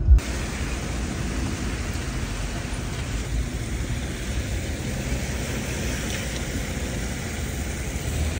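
Steady outdoor background noise: an even, constant hiss and rumble with no distinct events.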